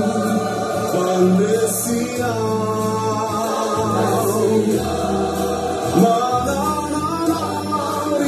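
Gospel choir singing.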